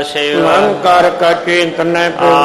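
A man chanting Sikh scripture (Gurbani) in a steady, melodic recitation, holding notes and sliding between them, amplified through a microphone.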